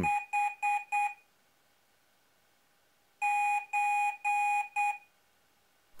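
Piezo buzzer beeping Morse code with one steady mid-pitched tone: a quick run of short beeps, a pause of about two seconds, then three long beeps and a short one. The closing long-long-long-short is a microcontroller's reply coding a stored space character.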